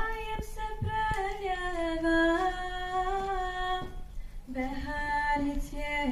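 A young woman sings solo into a microphone: long held notes that slide slowly between pitches, with a short break about four seconds in.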